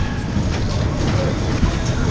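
Ski jump fairground ride car running fast round its track, a steady loud rumble of wheels on rails.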